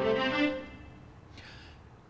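Casio CDP-200 digital piano notes ringing and fading, with a few short notes just after the start, dying away to quiet by about halfway through.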